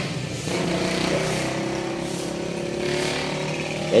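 Street traffic with a motor vehicle engine running steadily nearby.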